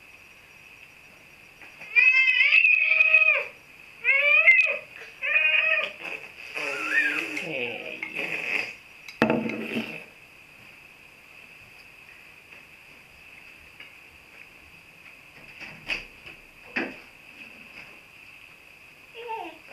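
Babies squealing: three loud high-pitched calls a couple of seconds in, then softer babbling, and a single thump about halfway through. A couple of small knocks near the end.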